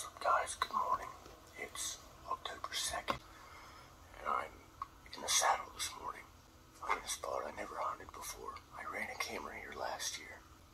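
Whispered speech: soft hushed talking with sharp hissing consonants.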